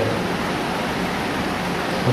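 Steady, even background hiss, like rushing air, with no distinct events.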